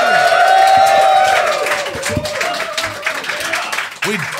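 Live audience cheering and applauding: one long held cheering voice over the first two seconds or so, with dense clapping throughout.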